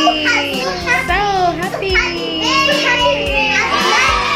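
Children's voices singing and calling out over background music with a steady beat.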